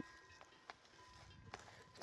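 Near silence in an open pasture, with two or three faint ticks.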